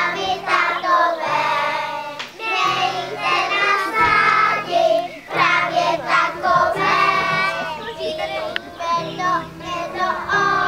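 A group of young children singing a song together in unison, with a steady instrumental accompaniment of held low notes under their voices.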